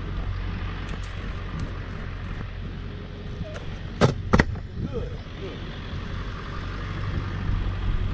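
Pickup truck engine idling steadily, with two sharp knocks close together about four seconds in as a camouflage bucket is set down and handled on the grass.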